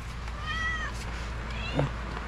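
A cat meowing: a short, high-pitched arched call about half a second in, then a briefer rising one, over a steady low hum.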